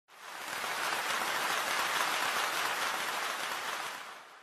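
A dense, steady rain-like hiss that starts suddenly, swells over about half a second and fades out near the end.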